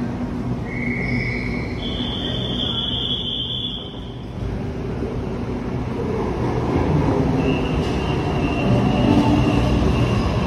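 Electric commuter train pulling into an underground station platform: a steady low rumble that grows louder over the second half as it arrives, with a high steady whine setting in as it comes alongside.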